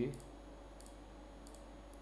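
Computer mouse button clicking: four faint, sharp clicks spread over about two seconds as checkboxes are ticked off on a web page.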